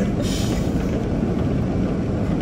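Steady low rumble of a car running with its heater on, heard from inside the cabin, with a brief hiss a fraction of a second in.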